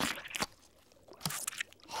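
Cartoon sound effects: a short wet squish as jelly is squirted from a jar onto a burger patty, two quick sounds near the start. About a second later comes a noisy bite and chewing sound.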